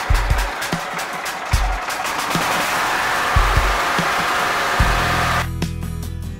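Riding lawn mower engine running just after a key start, heard under background music with a steady beat. About five seconds in, the engine sound drops away and the music carries on alone.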